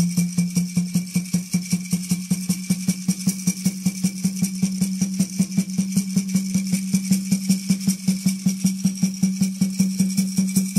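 Native American Church peyote music: a water drum beaten in a fast, even rhythm, about four to five strokes a second, with its steady low ringing tone, accompanied by a shaken gourd rattle.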